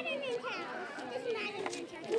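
Several children talking and calling out at once, their voices overlapping into a steady chatter.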